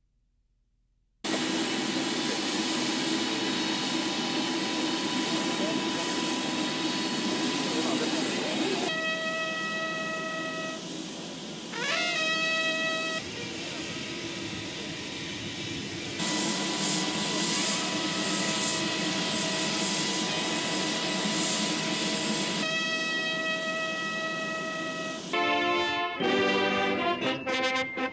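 Jet aircraft engines running with a steady roar and high whine, the pitch rising briefly about twelve seconds in. Near the end a brass band starts playing.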